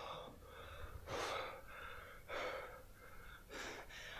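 A man breathing hard in sharp, gasping breaths, four of them about a second apart, the loudest just over a second in.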